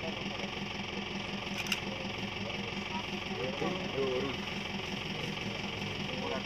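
A vehicle engine idling with a steady, evenly pulsing hum. Low voices talk briefly a little past halfway, and there is one sharp click just under two seconds in.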